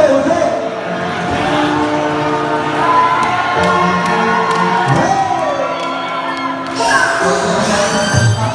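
Live concert music over a PA in a large hall, with long held notes and a singing voice that slides up and down in pitch, over a crowd cheering and shouting.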